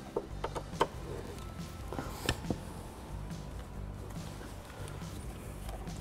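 Faint music in the background, with a few light clicks as a Torx driver snugs the sun visor's mounting screw into its plastic bracket.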